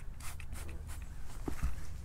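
Trigger spray bottle spritzing degreaser onto an oily engine valve cover: faint short hissing squirts, with a low thump about a second and a half in.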